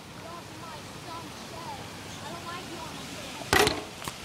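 Faint, distant voices of boys calling out over a steady outdoor noise haze, then a brief loud noise about three and a half seconds in.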